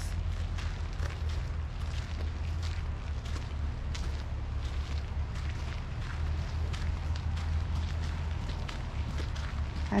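Steady low wind rumble on the microphone, with faint footsteps on a paved path.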